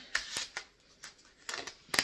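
Rustling and clicking of grocery bags and packaging being handled: a series of short, sharp rustles and clicks, bunched closer together near the end.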